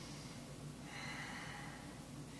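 A person breathing softly through the nose, with a faint drawn-out breath starting about halfway through.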